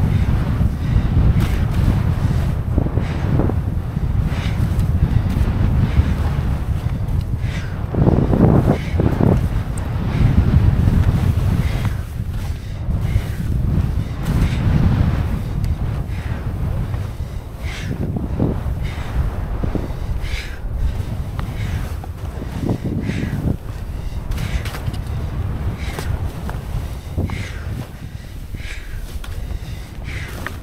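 Wind buffeting an action camera's microphone during a downhill ski run, a loud low rumble that swells and eases, with skis scraping through tracked-up snow on the turns.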